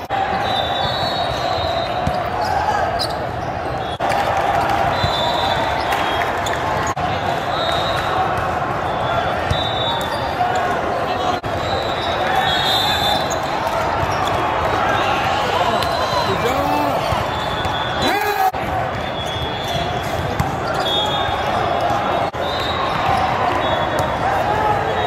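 Volleyball hall din: volleyballs being struck and bouncing over a steady murmur of many voices, echoing in a large hall, with frequent sharp knocks and recurring brief high-pitched chirps.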